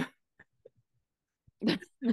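A short "oh" at the start, then a brief, breathy burst of laughter about a second and a half in, with faint quiet gaps between.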